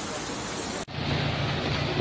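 Steady rushing noise of floodwater, cut off suddenly just under a second in. It gives way to a quieter rushing with a low, steady engine hum.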